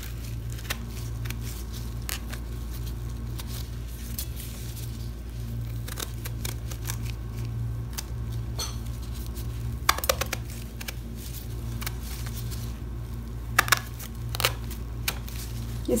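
Serrated kitchen knife cutting into small round eggplants over a ceramic plate: scattered soft cuts and sharp clicks at uneven intervals, over a steady low hum.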